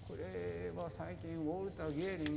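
Speech: a person's voice talking, with long drawn-out vowels.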